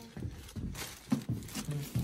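Irregular bumps and knocks with plastic rustling as a child clambers onto a car seat still wrapped in its protective plastic cover.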